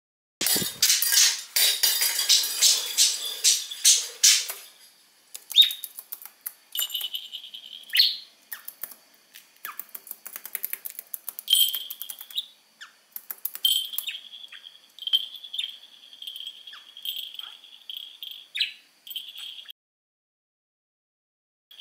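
Hard plastic toy balls clattering and rattling against each other in a plastic box for about four seconds. Then a budgerigar's high-pitched chirping and chattering follows, in short repeated stretches with light clicks between them.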